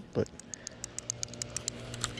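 Johnson Citation 110 spincast reel being cranked to retrieve line just after a cast, giving a quick, even run of light clicks, about eight to ten a second, that stops near the end.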